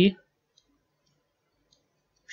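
A spoken word ends right at the start, then near silence with a few faint clicks from a computer mouse and keyboard.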